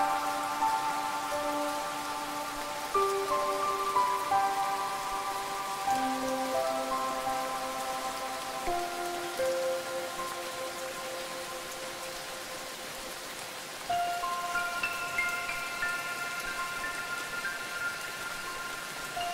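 Steady rain falling, with a slow melody of long, ringing bell-like notes over it. A new cluster of higher notes comes in about 14 seconds in.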